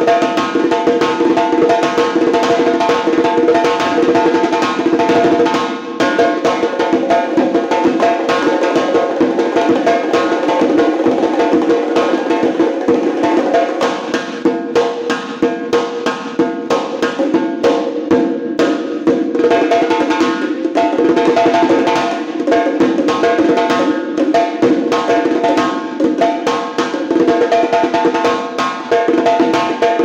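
Dovul, a large double-headed drum, played solo in a fast, dense rhythm of hand and stick strokes, with sparser, accented strokes for a stretch in the middle. A steady held pitched tone sounds underneath the drumming.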